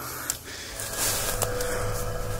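Footsteps and rustling through dry leaf litter and grass as someone walks uphill, growing louder about a second in. A faint steady hum comes in about halfway.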